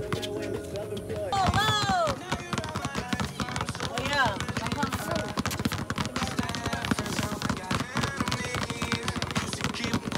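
Music with vocals over rapid, overlapping bounces of several basketballs being dribbled hard on asphalt. The bouncing grows denser about halfway through.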